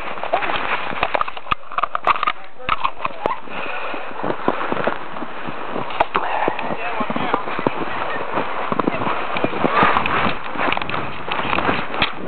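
Camcorder handled and jostled close to the snow: continual rustling and scraping with many sharp knocks and bumps on the microphone, and voices faintly in the background.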